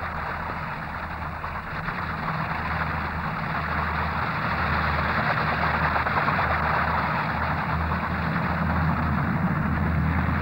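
Fairey Rotodyne compound gyroplane flying low overhead: a steady, noisy engine and rotor sound that grows louder as it approaches, over a low hum that pulses on and off.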